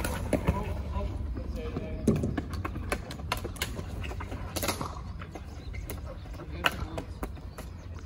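Ball hockey in play on a plastic-tile rink: scattered sharp clacks of sticks and ball striking the surface and each other, over a steady low rumble, with faint voices.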